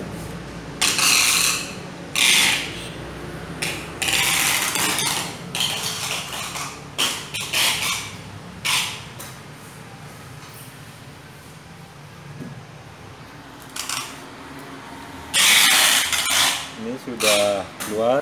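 Joko Energy H-303 oxy-hydrogen generator running just after being switched on: a low steady hum, with irregular bursts of hiss a fraction of a second to about a second and a half long.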